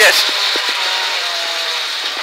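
Ford Escort Mk2 rally car's engine and road noise heard from inside the cabin, thin and without bass. The engine note drifts slightly lower and the overall sound eases as the car slows.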